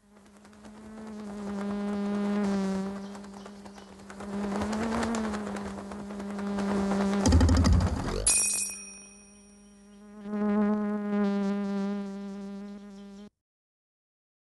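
Cartoon sound effect of a buzzing insect, its level swelling and fading as if it flies about. About seven seconds in comes a loud low whoosh, then a bright ringing ding, and the buzzing comes back before cutting off suddenly near the end.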